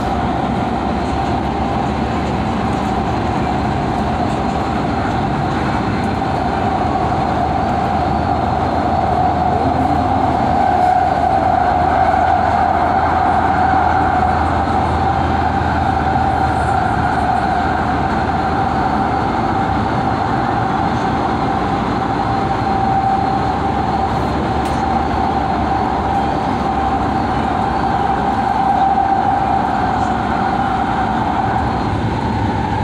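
Los Angeles Metro C Line light-rail car heard from inside while running at speed: continuous rumble of the ride with a steady whine, both a little louder about ten to fifteen seconds in.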